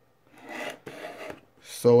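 Two rasping scrapes of a cardboard box being slid across a wooden desk, the second shorter than the first. A man's voice follows near the end.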